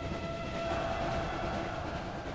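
Train running: a steady rumble with a faint held tone above it that fades out a little past halfway.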